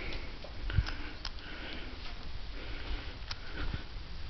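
Breathing close to the microphone, with short hissy breaths repeating, mixed with a few sharp clicks and low knocks from handling the camera.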